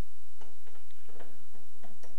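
Ratcheting wrench clicking in short strokes as it loosens the nut on a fuel-tank hold-down strap bolt: a run of quick, irregular ticks starting about half a second in, over a steady low hum.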